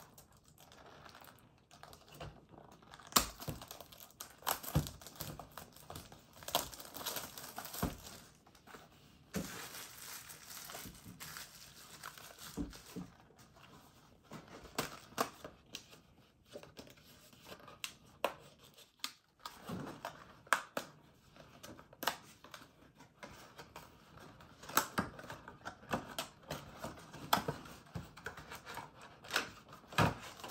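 Cardboard and wrapper packaging of a Pokémon card booster box crinkling and tearing as it is opened by hand. It comes as irregular crackles and clicks, the sharpest about three seconds in and again around twenty seconds.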